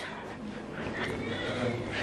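Quiet room tone with faint voices in the background.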